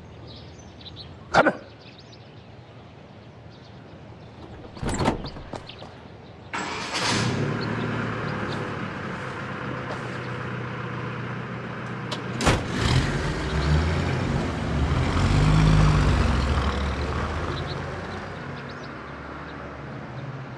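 An old sedan's engine comes on suddenly and runs steadily, preceded by a couple of sharp knocks. About halfway through a car door slams shut, then the engine swells as the car pulls away and fades off.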